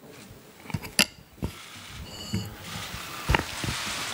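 A few sharp mechanical clicks in a quiet room, the loudest about a second in, with a brief high tone about two seconds in.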